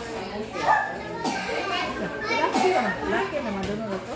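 Several people talking over one another, children's voices among them, with a few short sharp clicks in the chatter.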